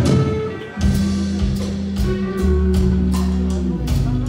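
Live band music with electric guitars. About a second in, bass notes and a drum kit enter with a steady beat.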